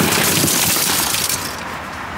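A car's tempered side window shattering after a strike from a knife's glass-breaker tip: a loud spray of crumbling, clinking glass that fades away over about a second and a half.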